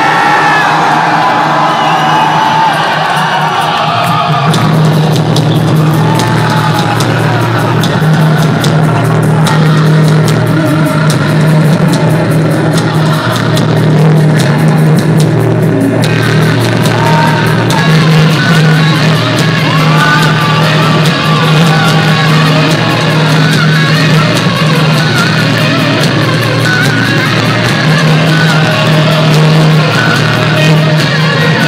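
Post-hardcore band playing live at full volume: distorted electric guitars, bass and drums. About four seconds in, a heavy low bass note comes in and holds underneath the band.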